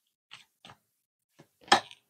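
Stiff tarot cards handled and drawn from a deck: a few short, soft clicks and snaps, the loudest near the end.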